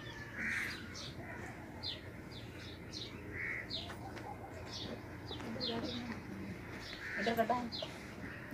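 Birds chirping in the background: many short, high, quick chirps repeating every fraction of a second. A brief pitched call comes near the end.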